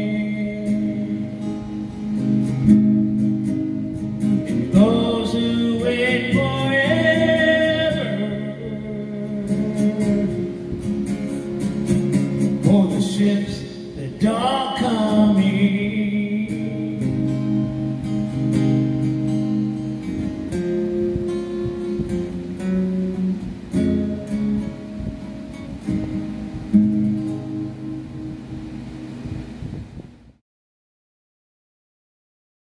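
Steel-string acoustic guitar strummed through a slow country song's outro, with a man's voice holding a few long sung notes without clear words in the first half. The music stops abruptly at the very end.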